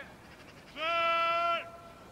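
A man's shouted pre-snap signal call at the line of scrimmage, a single drawn-out note held at a steady pitch for under a second, starting about three-quarters of a second in: part of the quarterback's cadence before the ball is snapped.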